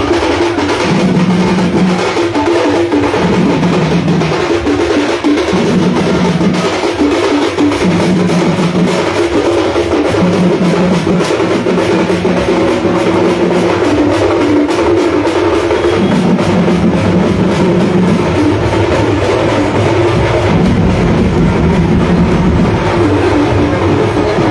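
Live sankirtan procession percussion: big barrel drums and brass hand cymbals struck in a fast, dense rhythm, with a low note repeating about once a second.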